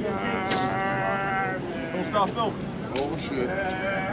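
A man's voice, wordless: one long, drawn-out, wavering call held for about a second and a half, followed by shorter sliding cries.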